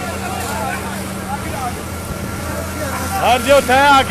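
Men's voices talking over a steady low hum, like a running engine, with a louder voice calling out about three seconds in.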